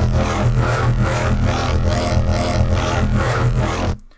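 Xfer Serum software synth holding one growl-bass note on its 'Evil Sweep' wavetable, with the tone shifting as Oscillator A's asymmetric warp knob is swept. The note stays at an even level and cuts off at the very end.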